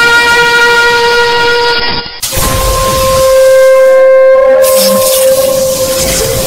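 Long, loud, horn-like held tones: one sustained chord that cuts off suddenly about two seconds in, followed by a new steady tone held through the rest.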